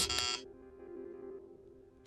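Electronic doorbell chime: a short, bright, high ring in the first half second that then dies away. A soft, steady music drone holds underneath.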